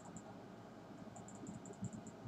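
Faint, rapid high-pitched ticking from a computer mouse, about eight ticks a second, over low room hiss. One run of ticks ends just after the start and another begins about a second in.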